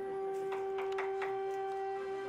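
Background music: one long held note on a flute-like wind instrument, steady in pitch, with a few short crackles about halfway through.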